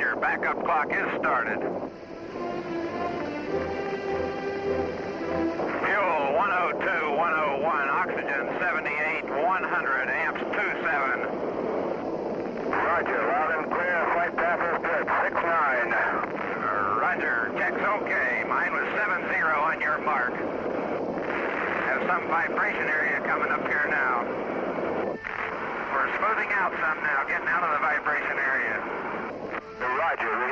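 Band-limited, radio-like voices mixed with music, a steady held tone for a few seconds near the start, then busy wavering voices and music.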